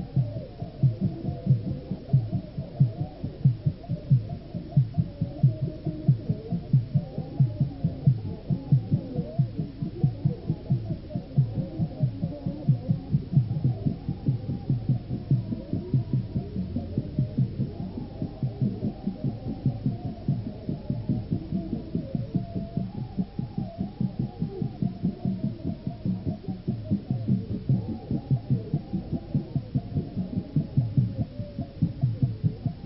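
Muffled rhythmic drum music, with a steady run of low beats about three a second and a wavering melodic line above them.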